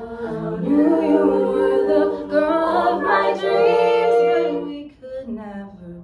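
Female a cappella group singing: a soloist at the microphone over held backing-vocal harmonies, swelling louder about a second in and falling away near the five-second mark.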